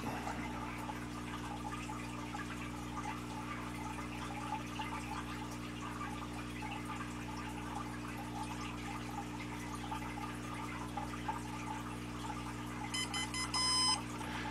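Steady low electrical hum while a Storm32 gimbal controller restarts, then a quick run of short, high electronic beeps about a second before the end.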